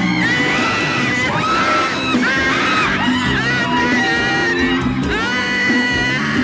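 Loud live arrocha show music with a steady bass line, recorded on a phone in the crowd, with many voices in the crowd shouting over it in rising and falling cries.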